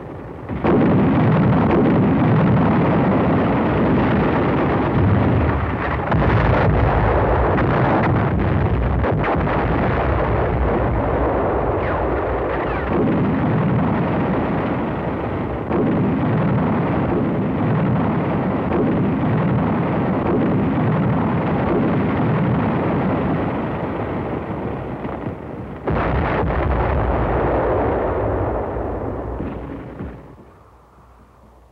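Battle sound of artillery shell bursts and gunfire: a dense, continuous din that comes in loud about half a second in, with a few sharp cracks standing out, and dies away just before the end.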